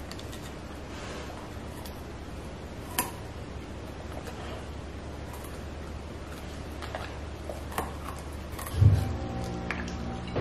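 A Shepsky (German shepherd–husky mix) chewing a carrot stick, with scattered sharp crunches, the loudest about three seconds in. Near the end a low boom sounds and music with held tones comes in.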